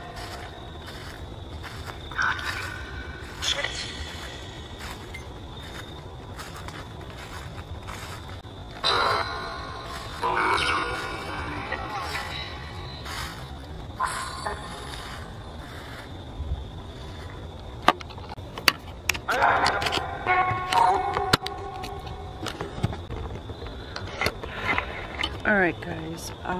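Necrophonic spirit-box app running on a phone: short, choppy bursts of voice-like fragments come and go over a steady faint high tone, with a few sharp clicks about two-thirds of the way through.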